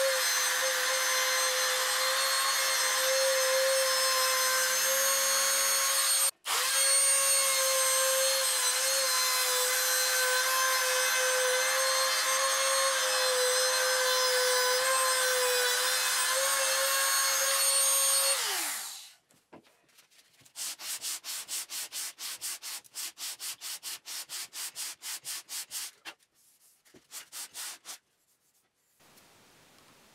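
A compact trim router runs steadily while cutting a hinge groove in walnut, with a momentary break about six seconds in. It switches off after about eighteen seconds and winds down, falling in pitch. This is followed by a run of short rubbing strokes, about three or four a second.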